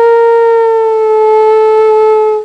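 Bamboo flute (bansuri) holding one long, steady note that sinks slightly in pitch as it goes.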